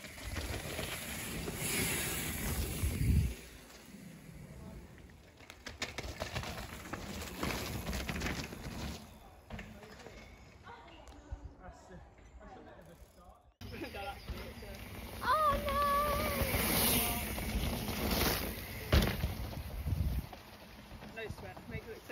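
Downhill mountain bikes running down a dirt and leaf-covered track: uneven rolling and rattling of tyres and bikes over loose ground, with distant voices. A short wavering call sounds after the sound changes abruptly partway through.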